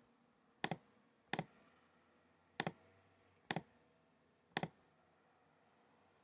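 Five faint computer mouse clicks about a second apart, each a quick press-and-release pair, pressing the keys of an on-screen calculator keypad.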